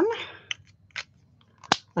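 Plastic alcohol markers being handled and swapped: a few short, sharp clicks, the loudest near the end.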